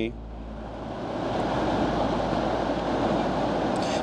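A long, deliberate out-breath through the open mouth, a breathy rush that swells over the first second and holds steady for about three seconds.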